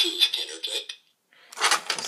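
A recorded voice clip played back through the small, tinny speaker of a generic voice-recorder circuit board inside a homemade BB-8 droid, thin with no low end, cutting off about a second in.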